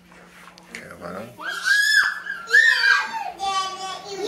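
A young child shrieking: two short, very high-pitched squeals beginning about a second and a half in, followed by more child vocalising in a lower voice.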